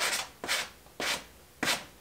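Hand sanding of picture frame molding trim with a small sanding block: four short rubbing strokes about half a second apart.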